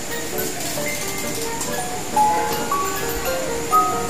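A simple electronic lullaby melody, played one clear note at a time in a slow tune.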